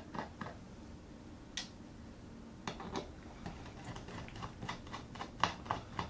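Small irregular clicks and taps of a precision screwdriver turning out the tiny screws of a 2011 Mac mini's Wi-Fi card: a few isolated clicks at first, then clicking more often from about the middle on.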